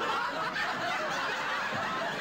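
Several people snickering and chuckling at once, overlapping and continuous.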